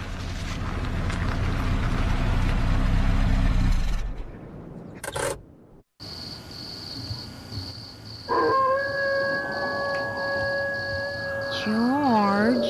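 A car engine runs and dies away over about four seconds, followed by a click. After a moment's dead silence, a steady high electronic whine starts, joined about two seconds later by a held buzzing tone that begins to warble up and down near the end, like a radio being switched on and tuned.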